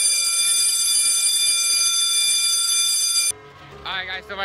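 A steady electronic tone, one unchanging buzzy pitch held for about three and a half seconds, that cuts off abruptly near the end.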